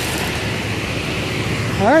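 Belt-driven threshing machine running steadily, powered from a tractor's belt pulley by a long flat belt: an even mechanical rush with no distinct beat.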